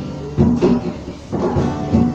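A group of students singing in chorus over backing music with a heavy low beat that comes about once a second.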